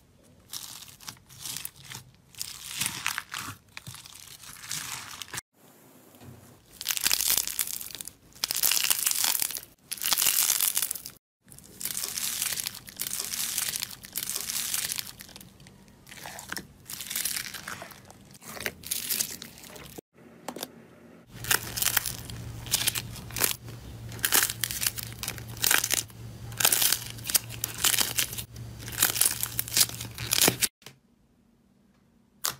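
Slime squished and pressed by hand in a run of short clips, mostly foam-bead slime (floam) that crackles and crunches with each squeeze, about once a second. In the last clip a steady low hum sits under quicker crackling.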